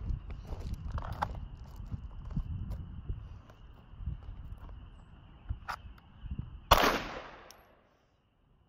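A single shot from a Smith & Wesson M&P 2.0 pistol about seven seconds in, sharp with a short echo after it. Before it there is low rumbling wind and handling noise on the microphone.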